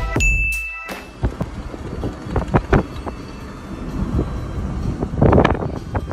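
Music ends with a short ding chime about a second in. Then comes the road and wind noise of a moving car, uneven, with a louder buffet about five seconds in.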